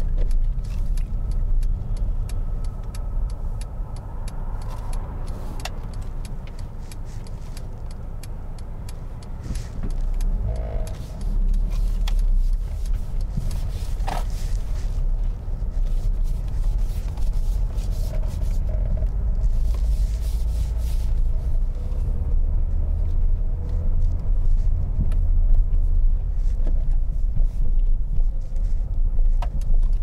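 Car engine and road rumble heard from inside the cabin as the car drives along a street, dipping briefly and then growing louder about a third of the way in as it picks up speed.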